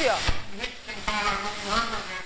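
Hissing, crackling noise on a live long-distance video-call audio link, with a man's voice coming faintly through it in the second half.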